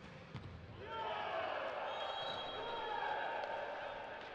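Volleyball struck hard in an attack at the net, a sharp smack right at the start, with a second impact a moment later. About a second in, loud sustained shouting and cheering rises in the hall as the point is won.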